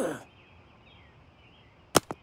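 A cartoon character's short wordless vocal sound that slides down in pitch, then quiet, then a sharp click near the end as a smartphone is pushed into a speaker dock.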